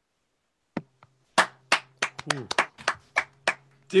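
One person's hand claps over a video call's audio: about a dozen sharp claps spread over some three seconds, applause at the end of a song.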